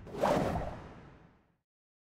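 Transition whoosh sound effect that rises quickly and fades away over about a second.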